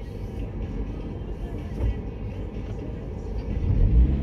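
Car engine and road rumble heard from inside the cabin while driving, swelling louder near the end as the car picks up speed.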